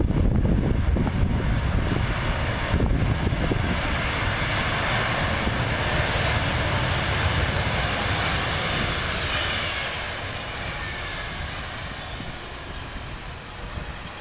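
Boeing 777-200ER airliner's jet engines during its landing rollout: a loud rumbling roar that gradually fades. Around two-thirds of the way through, a whine falls in pitch.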